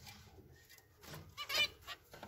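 Zebra finches calling: a few soft calls in the first second, then a quick run of short calls about one and a half seconds in.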